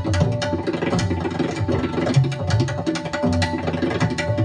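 Tabla ensemble playing a fast passage: dense, rapid strokes on the small treble drums, with deep bass-drum (bayan) strokes that bend in pitch, over a steady held drone note.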